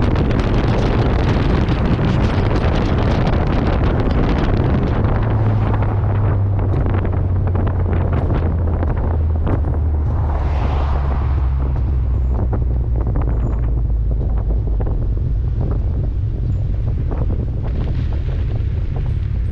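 Wind buffeting the microphone of a car-mounted action camera, over the low drone of the car's engine and road noise. From about six seconds in the wind noise eases and the engine drone settles lower in pitch.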